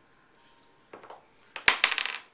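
A twenty-sided die rolled onto a wooden tabletop: one sharp clack near the end, followed by a few quick smaller clicks as it bounces and settles. This is the attack roll.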